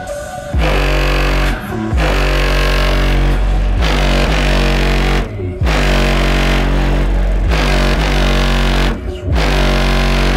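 Electronic music played loud through a car audio system with two Massive Audio Hippo 15-inch subwoofers driven by a Crescendo BassClef 4K amplifier, heard from outside at the rear of the vehicle. Deep, sustained bass notes dominate, and the music drops out briefly three times: about a second and a half in, about five and a half seconds in, and about nine seconds in.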